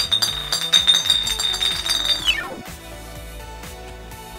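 Background music with a high, steady electronic tone laid over it that holds for about two seconds and then slides down in pitch before fading.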